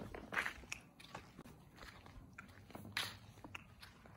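Faint, irregular crunching steps on dry sandy dirt ground, a few soft scuffs, a little louder just after the start and again about three seconds in.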